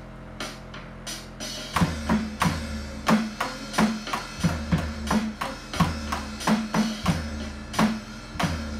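Drum cover played on an electronic drum kit along with a music backing track: light hits at first, then about two seconds in the full groove comes in, with kick, snare and cymbals at about three strikes a second over the backing music.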